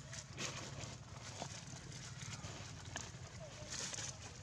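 Macaques shifting over dry leaves and rock: scattered light rustles and knocks over a steady low hum, with a few brief squeaks about a second and a half, three seconds and three and a half seconds in.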